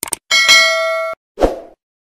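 Subscribe-button animation sound effects: a quick run of clicks, then a bright bell ding that rings for about a second and cuts off suddenly, followed by a short low thump.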